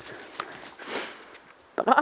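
Footsteps and rustling through dry grass on a forest track, with a longer hissing swish about a second in. A voice calls "Bra!" near the end.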